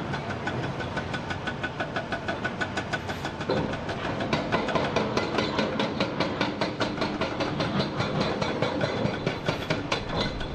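Hydraulic rock breaker on a Hyundai HX480L excavator hammering rock in rapid, evenly spaced blows, several a second and getting sharper about halfway through. Underneath runs the steady noise of the excavators' diesel engines.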